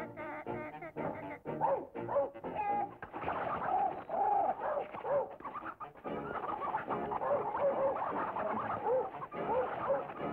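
Cartoon soundtrack of comic bird squawks and coos over orchestral music. Quick percussive taps fill the first few seconds, then from about three seconds in it becomes a dense tangle of warbling bird cries as the bird and dog fight.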